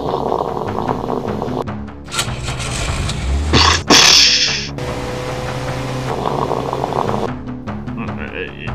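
Orchestral cartoon score playing under sound effects, with a heavy low thud and a loud crashing burst about three and a half to four seconds in.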